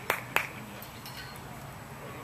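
Two sharp hand claps about a quarter second apart right at the start, then steady low background noise.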